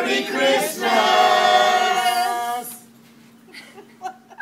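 A small group of mixed voices singing a cappella, finishing a jingle on one long held chord that stops about three quarters of the way in, leaving only faint scattered sounds.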